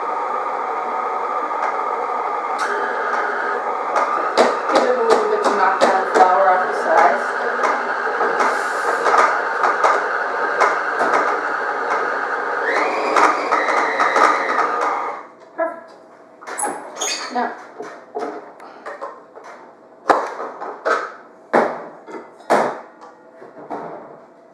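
Stand mixer motor running steadily while its flat beater works flour and hazelnuts into a stiff butter dough, with knocking as the dough clumps against the beater and bowl. It cuts off suddenly about 15 s in. Irregular clinks and knocks of a steel mixing bowl and spatula follow as the dough is scraped out.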